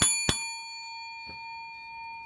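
A metallic bell ding struck once shortly after the start, the last of a quick run of dings, its clear ringing tone slowly fading away. It marks a $100 win on a scratch ticket.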